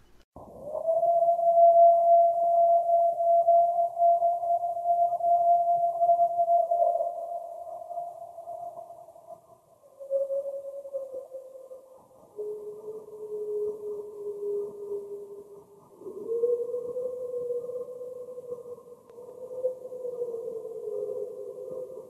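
Playback of a night field recording of a long, siren-like howl: one steady, drawn-out wail for about ten seconds, then lower held wails that step down in pitch and rise again. The sound is thin and muffled, with nothing above the low-middle range. Its source is unidentified: the recordists insist it is not a siren.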